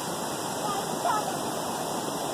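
Steady rushing hiss from a phone's microphone muffled inside a shorts pocket, with the fabric pressed against it.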